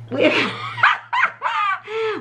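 A dog barking and yelping in several short, high calls.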